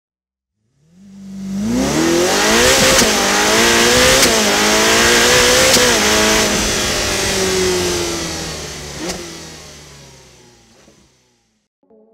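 A car engine accelerating hard through the gears. Its pitch climbs and drops back at each shift, about three, four and six seconds in, then falls away and fades out.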